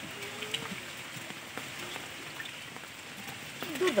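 Steady pattering of rain, with scattered small taps and splashes.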